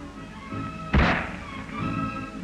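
A single .22 rifle shot about a second in, short and sharp, over steady background music.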